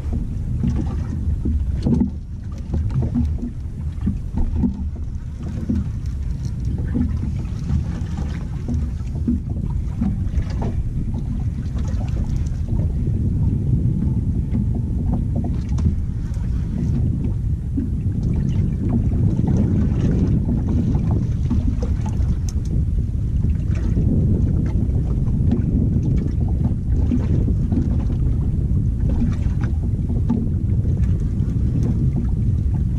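Steady low rumble of wind on the microphone and water moving around a small boat at sea, with scattered faint clicks.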